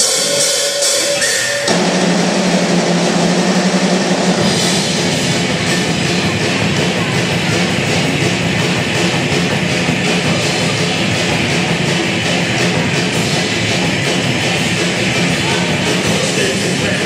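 Rock band playing a song on electric guitars, bass guitar and drum kit. The sound thickens about two seconds in, and the low end fills in around four seconds in, after which the full band plays on steadily.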